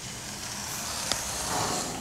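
Steady hiss, with one small click about a second in.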